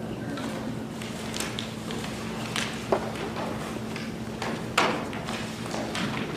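Papers being handled and shuffled on a table, with a few sharp knocks and thuds, the loudest about three and about five seconds in, over a steady low electrical or ventilation hum.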